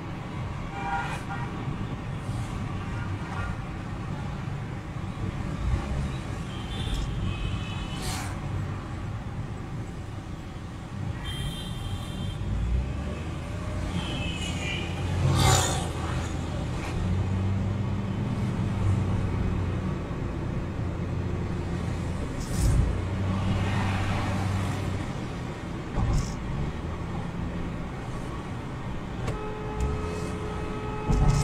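Car cabin noise while driving on a city road: steady low rumble of engine and tyres, with a few short horn toots from traffic and several sharp knocks along the way.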